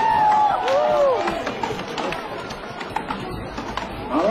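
Several axes chopping into wooden poles, with many sharp strikes overlapping at an irregular pace. Crowd noise runs underneath, and a drawn-out voice rises and falls in the first second or so.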